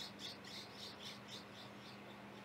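A small bird chirping faintly in the background, a quick run of short high-pitched chirps about four a second that fades out about one and a half seconds in, over a faint steady low hum.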